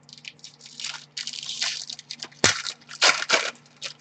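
Trading-card pack wrappers crinkling and tearing as packs are opened, with cards being handled, with sharp crackles about two and a half and three seconds in.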